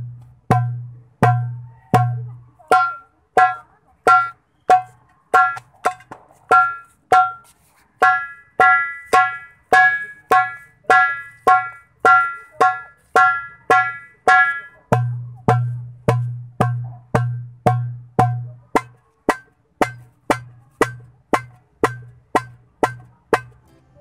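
Darbuka (goblet drum) hand-struck in a basic drill of single, evenly spaced strokes, about one and a half a second, quickening to about two a second near the end. The strokes have a deep dum boom at first, sound brighter and ringing with little boom in the middle stretch like tak strokes, and boom deeply again after about fifteen seconds.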